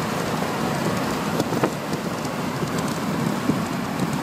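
Wind rushing over a phone microphone held out of a car window at highway speed, mixed with road noise: a steady rushing noise with a few brief pops.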